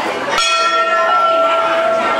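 Temple bell struck once about half a second in and left ringing with a steady, clear tone, over the chatter of a crowd.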